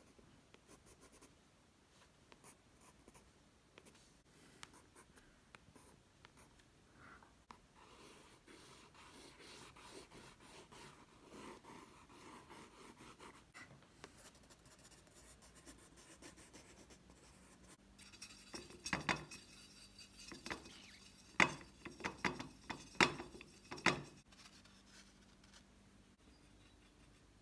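Coloured pencil scratching across textured watercolour paper in short strokes, faint, with a run of sharper, louder strokes near the end.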